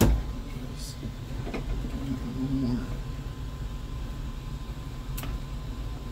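A thump at the very start, then a few light clicks and handling noises as filament and its white tubing are worked into a Modix 3D printer's extruder, over a steady low hum of running fans.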